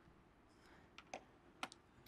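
Near silence broken by a few faint laptop key taps in the second half, about four short clicks.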